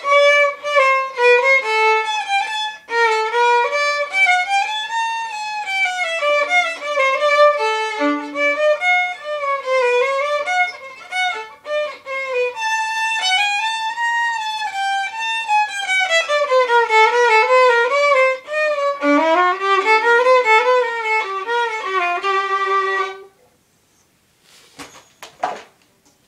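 Unaccompanied violin playing a bourrée, a single melody line with a held lower note sounding beneath it in places; the music stops about 23 seconds in.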